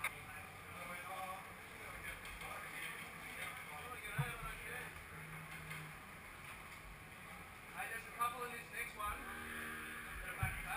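Faint, indistinct talk from people nearby, a little louder near the end, over a steady low background hum.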